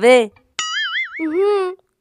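Cartoon-style comedy sound effect: a high, fast-wobbling 'boing' tone about half a second long, followed by a lower tone that rises and falls.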